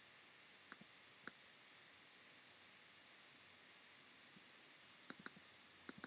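Near silence with a few faint computer mouse clicks: two about a second in, then a quick run of clicks near the end.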